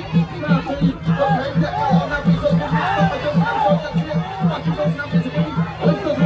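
A ringside drum beating a steady quick rhythm, about four beats a second, under the voices of a shouting crowd.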